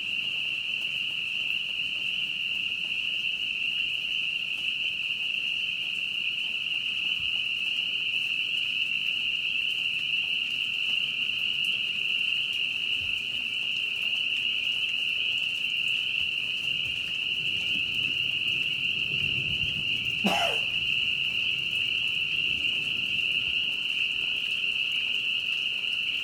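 A steady, high-pitched chorus of calling frogs, merging into one even, unbroken trill. A single brief, sharp sound cuts across it about three-quarters of the way through.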